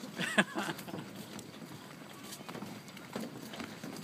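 Footsteps on a suspension footbridge deck: a faint, irregular run of knocks. A short voice sound comes in the first second.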